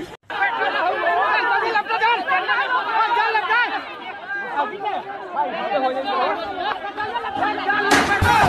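Several high-pitched voices chattering over one another, with no clear words. A short click opens it, and a louder burst comes near the end.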